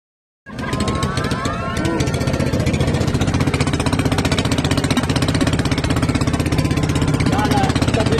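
Engine of a small wooden outrigger boat running with a rapid, steady putter, with voices over it about a second in and again near the end.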